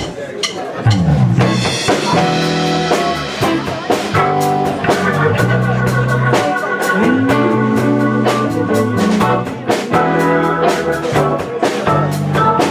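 Live blues band kicking into an instrumental intro about a second in: electric guitars, drum kit and keyboard playing, with no vocal yet.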